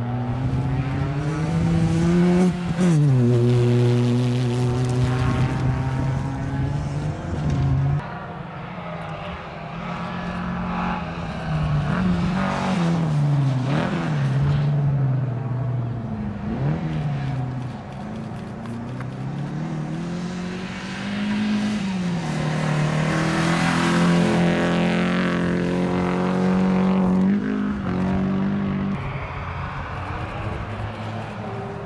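Rally car engines revving hard and shifting through the gears as several cars race past in turn. The pitch climbs and then drops sharply at each upshift.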